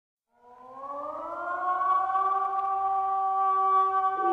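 Air-raid siren winding up: a chord of several tones rising in pitch out of silence for about a second, then holding a steady wail.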